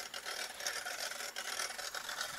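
Faint outdoor ambience, with light irregular rustling and knocks from a handheld phone being moved and gripped.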